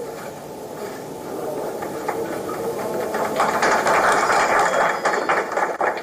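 Rapid clicking of many camera shutters as press photographers shoot the manifesto being held up. It is thin at first, builds from about two seconds in, and is densest a little past the middle.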